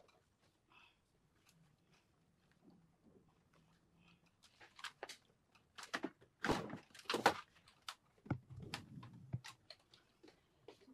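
Hand-stitching a leather boot with thread: faint clicks at first, then a run of sharp, scratchy pulls and clicks as the thread is drawn through the leather, loudest a little past the middle.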